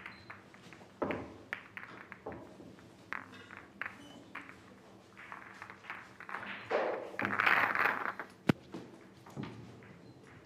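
Pool balls clicking and knocking together as they are gathered and racked on the table by hand, with a louder stretch of rattling about seven seconds in and one sharp clack shortly after.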